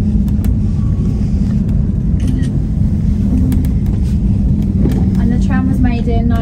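Jasper SkyTram aerial tramway cabin climbing on its cables, heard from inside: a steady low rumble with a constant hum.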